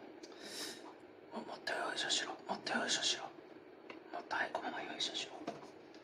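A person speaking quietly in short phrases, too softly for the words to be made out.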